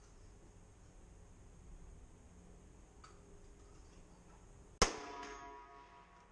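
A single shot from a CZ 455 bolt-action rifle in .17 HMR rimfire, sharp and loud, about five seconds in, with a ringing tail that dies away over about a second.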